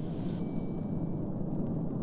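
Steady low drone of jet aircraft engines in flight. A thin, high, steady radio tone lies over it and cuts off just over a second in.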